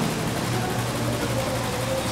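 Steady low hum with a faint higher tone above it over a light hiss: the room tone of a miked hall.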